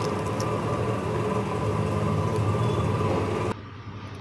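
A steady low machine-like hum with a hiss over it, which cuts off suddenly a little before the end, where the sound drops to a much quieter background.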